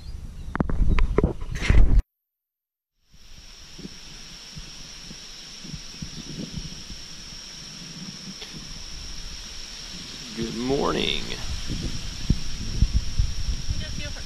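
Wind buffeting and handling noise on a small action-camera microphone, then a cut to a second of silence. After the cut, a steady high insect drone carries on under low wind rumble, with a brief rising voice-like call about eleven seconds in.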